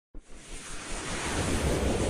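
Swelling whoosh sound effect of a logo intro: a rushing noise with a deep rumble beneath it that builds steadily in loudness from a quiet start.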